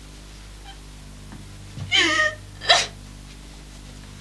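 A woman crying: a short, high, wavering sob about two seconds in, then a quick, sharper catch of the breath a moment later.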